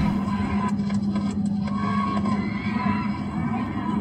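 Gunfire at an outdoor rally played over a car radio: several sharp cracks in quick succession about a second in, followed by a crowd screaming and shouting. A steady low drone of the moving car runs underneath.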